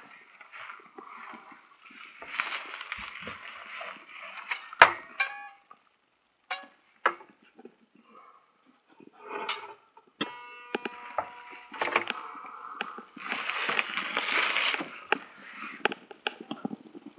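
Handling noise from a handheld phone being carried and moved about: two stretches of rustling, several sharp clicks and knocks, the loudest about five seconds in, and a short ringing sound of several pitches about ten seconds in.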